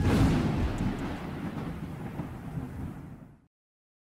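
Thunder sound effect: a sudden clap at the start rolls into a low rumble that fades away over about three and a half seconds, then cuts off to silence.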